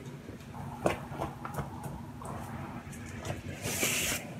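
Faint handling noises as a foam pool noodle is pulled from a stack: scattered light knocks and rustles, a sharper click about a second in, and a short scraping hiss near the end, over a low steady hum.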